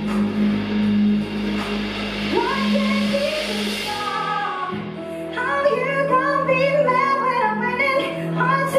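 Live rock band with a female lead singer. A steady low drone and a building cymbal wash cut off about four seconds in, and the sung vocal line comes in about a second later.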